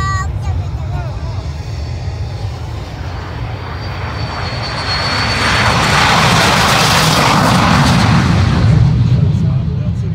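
Jet aircraft making a low pass over the airfield: its engine noise swells from about three seconds in to its loudest in the second half. A high turbine whine sounds as it approaches.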